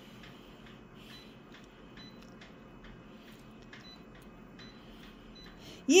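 Faint key beeps and light taps from a colour copier's touchscreen control panel as its settings are pressed through: about a dozen short ticks, some with a brief high pip, spaced irregularly over a low room hum.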